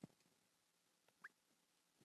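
Near silence: room tone of a narration pause, with a faint click at the start and a brief faint rising chirp a little past a second in.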